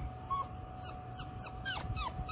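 Yorkshire terrier whimpering: a string of short, high squeals that drop in pitch, coming closer together in the second half.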